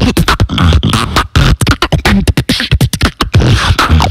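Beatboxing into a handheld microphone: a fast, dense run of sharp mouth clicks and snares over repeated deep bass kicks.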